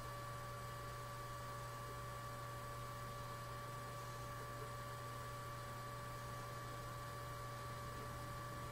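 Steady low electrical hum with an even hiss and a couple of thin, steady whining tones above it, unchanging throughout: the background noise of the recording setup, with no other sound.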